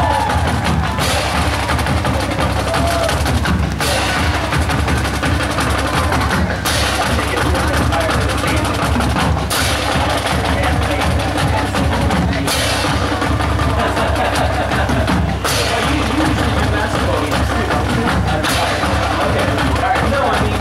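Marching band drumline playing a cadence, with bass drums and snare drums, as the band marches onto the field. Brief gaps come about every three seconds.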